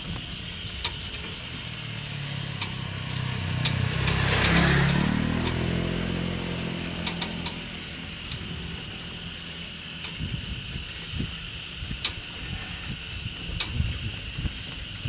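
A motor vehicle's engine passes close by, growing louder to a peak about four and a half seconds in and then fading away. Scattered clicks and knocks and a steady high hum run throughout.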